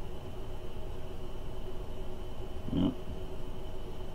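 Steady low background hum with a faint constant high whine, and no distinct event. A man says a short "yeah" about three quarters of the way in.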